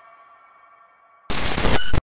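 Editing sound effects: a quiet ringing tone, several pitches held together, fades away. About 1.3 s in, a sudden loud noisy burst cuts in and runs on, with high thin tones showing through near the end.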